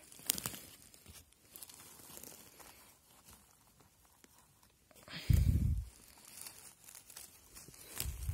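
Faint rustling and light crackling of dry pine needles, twigs and moss as a hand works a mushroom free from the forest floor. A single heavy low thump about five seconds in is the loudest sound.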